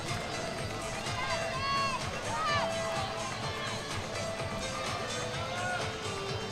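Track-stadium background: music playing with scattered distant voices and crowd sounds, steady and well below commentary level.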